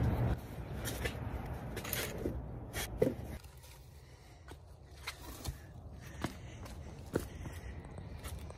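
Footsteps and rustling movement, with a few light knocks and scrapes. The movement is fuller over the first few seconds, then quieter with scattered light knocks.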